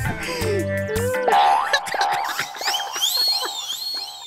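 Comic background music: low held bass notes for about the first second, then a string of high sliding tones that repeatedly rise and fall.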